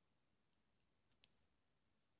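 Near silence broken by two faint clicks just over a second in, the second the sharper: metal knitting needle tips tapping together while knit stitches are worked continental style.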